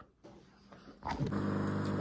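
Near silence for about a second, then a steady low hum comes in abruptly and holds.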